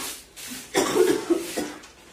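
A person coughing, a burst lasting most of a second that starts just under a second in.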